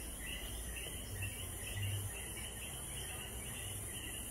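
Evening chorus of night insects: a steady high-pitched buzz with many short chirps repeating several times a second, over a faint low hum.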